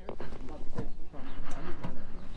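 Faint, indistinct talking over a low, steady rumble.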